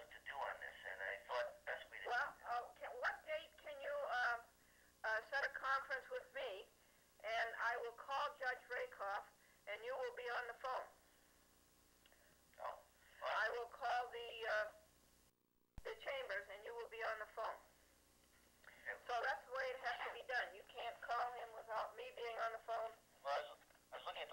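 Recorded telephone conversation: voices heard thin and narrow over a phone line, with pauses between turns and a brief dropout in the recording about fifteen seconds in.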